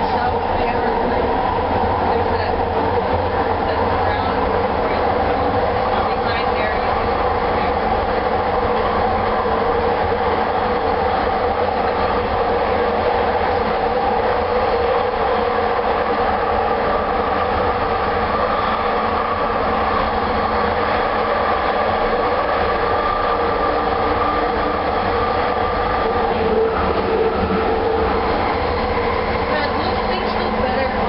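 Bombardier Mark II SkyTrain car, driven by linear induction motors, running at speed along its guideway, heard from inside the car: a steady rolling rumble with a constant hum running through it.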